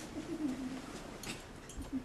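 A person's low, drawn-out groan that wavers and then falls, followed by a few sharp knocks and a dull thump as a body is dragged off a couch by the legs.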